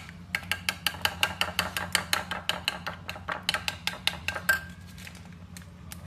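A metal spoon stirring a thick creamy sauce in a ceramic bowl, clinking against the bowl several times a second for about four seconds. The run ends with one louder, briefly ringing clink.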